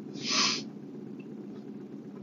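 A single short sniff through the nose, about half a second long just after the start, from someone who has been crying. It sits over a steady low hum of the car cabin.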